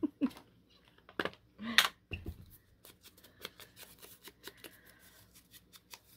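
A few sharp clicks and knocks as the lid of a Distress Ink pad is taken off, the loudest about two seconds in, followed by a run of light, quick taps and scuffs as an ink blending tool is dabbed on the ink pad and the edges of a paper strip.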